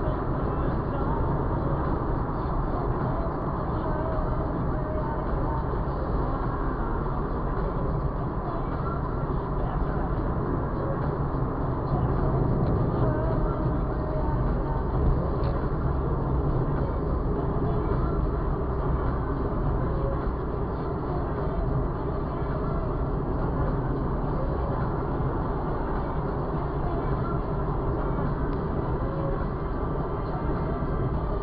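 Steady road and engine noise inside a car's cabin at motorway speed, heaviest in the low end.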